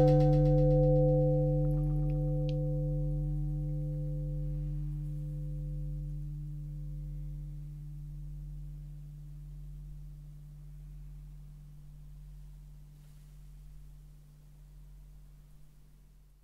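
An audio sample of a struck, bell-like metal tone played back dry, with no tremolo effect applied. It is one low ringing note that slowly dies away, and one of its upper partials wavers slowly as it fades.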